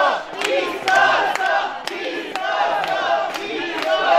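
A crowd of many voices shouting and cheering together, rising and falling in surges.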